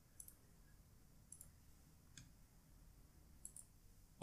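Near silence with a few faint, sharp clicks scattered through it.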